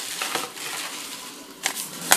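Plastic bubble wrap crinkling and rustling as it is handled and unwrapped, with a sharp click near the end.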